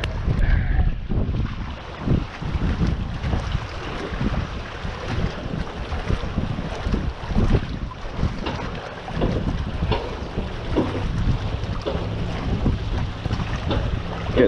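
Strong, gusty wind buffeting the microphone: a heavy rumbling noise that swells and dips from gust to gust.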